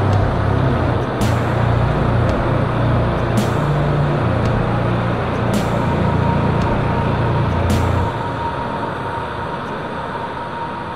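Slow doom metal instrumental: heavy distorted low guitar chords with a crash about every two seconds. The chords stop about eight seconds in and the sound fades out.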